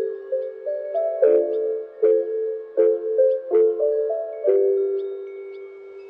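Music: lo-fi piano playing a soft chord progression on its own, without drums, each chord struck and left to ring, growing quieter near the end.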